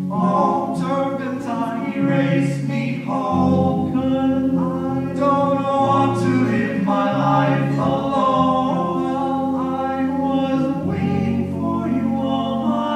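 A cappella vocal group singing live in harmony: several voices holding chords over sustained low bass notes, the chords changing every second or two.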